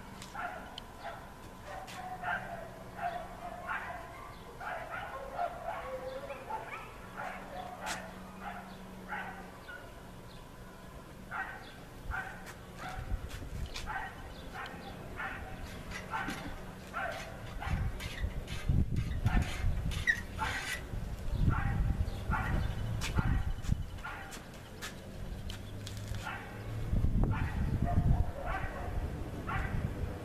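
A dog barking and yipping repeatedly, about two short calls a second, with bouts of louder low rumbling in the second half.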